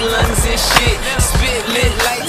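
Hip-hop music with a steady drum beat, mixed with a skateboard's wheels and trucks rolling and grinding on a concrete ledge.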